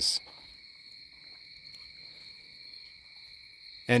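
Faint steady high-pitched trill or whine at two pitches, held unbroken, over low room noise.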